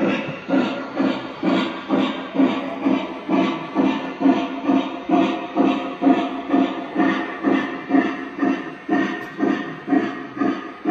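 Electronic steam chuffing from an O scale model steam locomotive's onboard sound system, a steady even beat of about two chuffs a second as the engine runs.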